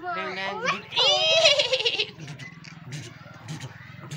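Playful voice sounds during a piggyback game: a high squealing cry that slides down in pitch about a second in, then quieter vocal noises.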